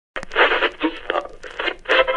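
A tinny, radio-like burst of garbled, choppy sound with scattered crackling clicks, like a radio being tuned between stations.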